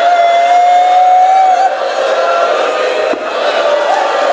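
A man's voice holding one long, high, slightly rising wailing note for a little under two seconds, over the steady sound of a crowd of mourners crying out.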